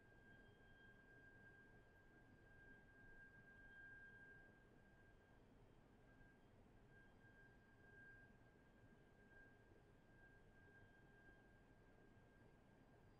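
Near silence: faint hiss and a faint steady high tone.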